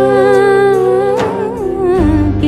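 A woman singing a Kannada film song, holding a long note with vibrato over soft instrumental backing, then sliding in pitch about a second in.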